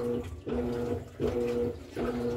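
Electrolux top-loading washing machine mid-wash, its motor humming in short steady pulses about every three-quarters of a second as the agitator turns back and forth.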